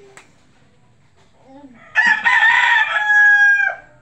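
A rooster crowing once, starting about halfway through: a loud call with a rough opening and a long held final note that drops away at the end.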